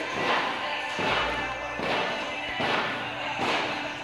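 Heavy battle ropes slapping a rubber gym floor in a steady run of strokes, about one every 0.8 seconds, with music playing underneath.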